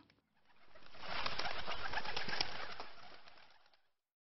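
Birds calling outdoors. The sound fades in over about a second, holds steady, and fades away again near the end.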